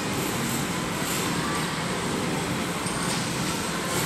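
Steady indoor background din, an even wash of noise with no distinct events standing out.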